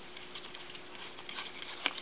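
Stack of baseball trading cards being thumbed through by hand: faint soft clicks and rustles of card edges sliding past one another, with one sharper click near the end.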